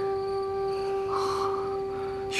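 Background score holding one long, steady note with its overtones, like a sustained wind-instrument drone, with a brief soft noise about a second in.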